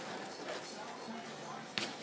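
Rustling from a leather purse strap being handled, with a sharp click near the end as its snap fastener is undone.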